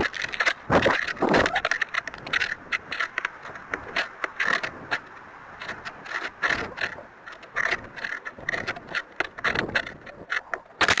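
Wind buffeting and rattling picked up by a small keychain camera riding on a descending model rocket: a dense, irregular crackle of clicks and scrapes over rushing air, heaviest in the first two seconds and again near the end.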